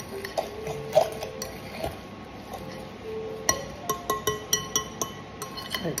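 A fork mixing mashed sardine in a glass bowl, tapping and scraping against the glass. From about halfway in, the clinks come in a quick run, each with a brief glassy ring.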